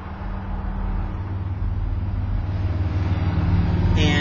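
A motor vehicle's engine running nearby: a steady low hum that grows gradually louder.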